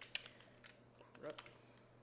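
Handling noise of a camera being raised on its tripod: a sharp click just after the start and a few lighter clicks and knocks over the next second. A brief murmur of voice comes about halfway through.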